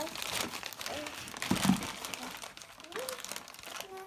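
Crinkly silver foil gift wrapping being pulled and crumpled by a small child's hands, a dense crackling that is heaviest in the first two seconds, with a dull bump about a second and a half in.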